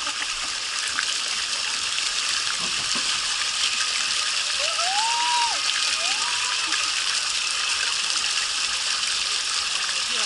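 Steady rushing hiss of water running down a fibreglass water slide flume. About halfway through, two short rising-then-falling calls sound a second apart.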